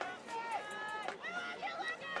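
High-pitched human voices calling out or shouting close to the microphone, a few drawn-out calls one after another, without clear words.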